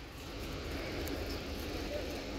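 Low, steady rumble in the sky from rocket interceptions overhead, rising slightly about half a second in.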